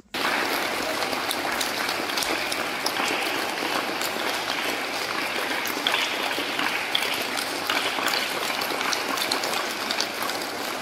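A crowd clapping steadily: continuous applause made of many fast, overlapping hand claps.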